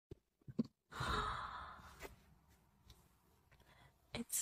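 A woman sighs once, a breathy exhale about a second in that fades away over about a second.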